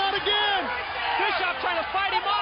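A man's voice calling out in excited, drawn-out exclamations over steady arena crowd noise.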